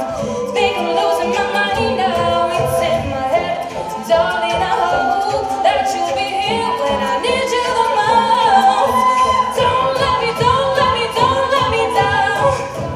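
All-female a cappella group singing, a solo voice over sustained backing chords with vocal percussion keeping a steady beat; the sound fills out suddenly about four seconds in.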